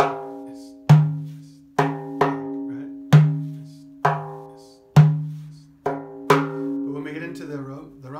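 Frame drum playing the 9/8 Karşılama rhythm with the ninth accent dropped. Deep, ringing bass strokes (dum) alternate with lighter, higher strokes (tek), about one a second with a couple of quick pairs. The strokes stop near the end as a man's voice comes in.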